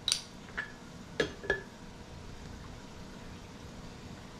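A few clicks and knocks as a carton is handled, then liquid poured from the carton into a NutriBullet blender cup, a faint steady pouring sound.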